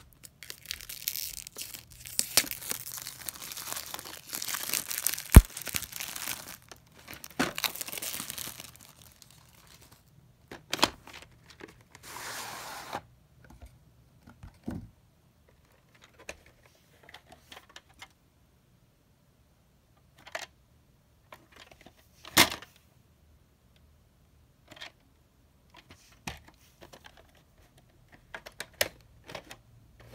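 Plastic shrink-wrap being torn and peeled off a sealed VHS box, crackling for several seconds, with one sharp snap about five seconds in. After that come scattered clicks and knocks of plastic VHS cassettes being handled, one of them louder about twenty-two seconds in.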